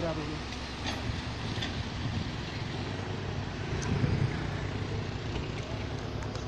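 An engine running steadily with a low hum, with voices talking over it.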